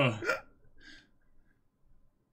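A man's short voiced laugh, cut off about half a second in. It is followed near the one-second mark by a faint breath, then quiet room tone.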